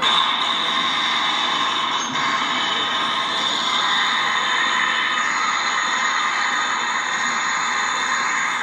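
A steady, high-pitched screeching drone over a hiss, held at an even loudness, from a sound effect played over the stadium loudspeakers.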